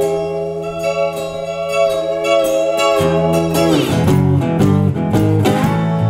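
Resophonic guitar played with a slide in an instrumental passage: a chord held for about three seconds, then notes sliding down in pitch into a run of new notes.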